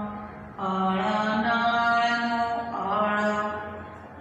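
A woman's voice chanting in a sing-song way, drawing out long held syllables of about a second each. There is a short break about half a second in, and the voice fades near the end.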